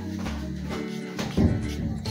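Background music with steady held notes, and a brief louder sound about one and a half seconds in.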